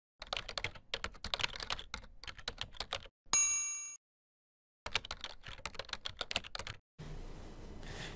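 Intro sound effect of rapid typing key clicks for about three seconds, then a single bright ding that fades away, a short pause, and another two seconds of typing.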